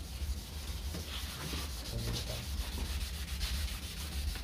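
A yellowed plastic car headlight lens being wet-sanded by hand with fine 2000-grit sandpaper: repeated back-and-forth rubbing strokes, over a steady low rumble.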